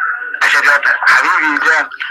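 Speech only: a caller's voice coming in over a call line.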